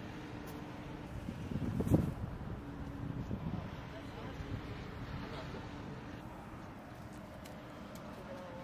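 Faint voices over a steady low hum, with one sharp thump about two seconds in.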